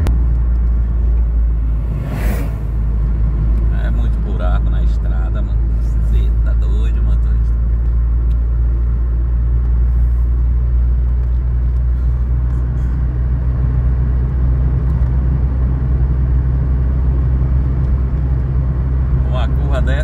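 Steady low rumble of a car's engine and tyres on asphalt, heard from inside the cabin while driving. A brief whoosh comes about two seconds in as an oncoming truck passes.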